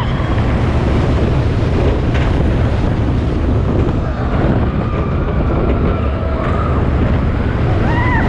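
Wind rushing over a camera microphone riding a Rocky Mountain Construction hybrid roller coaster train, with the train rumbling along its track as it drops and inverts. Faint rider screams come through in the second half.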